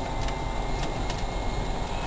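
Inside the cab of a GMC pickup converted to battery-electric drive, moving in first gear: steady drivetrain and road noise, with a faint steady high tone from the electric motor.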